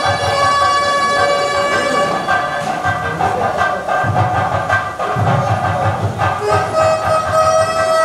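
A reed wind instrument plays long held, shrill notes as ceremonial music. Low drum beats come in about halfway through and keep going.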